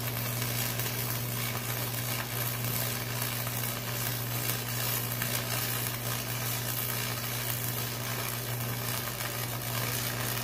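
Electric arc welding on steel: the arc's continuous sizzling crackle with a steady low hum under it, running without a break.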